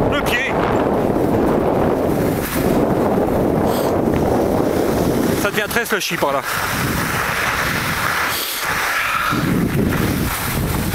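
Loud wind buffeting the microphone of a camera carried by a skier going downhill, with the hiss of skis sliding over packed snow, more noticeable in the second half.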